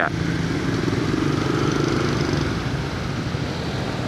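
Kawasaki KLX 150 single-cylinder motorcycle engine running steadily at low speed in stop-and-go traffic, heard from a helmet camera, with the surrounding traffic mixed in.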